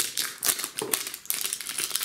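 Plastic wrapper on a toy surprise ball crinkling and crackling as it is peeled off by hand, in quick, irregular crackles.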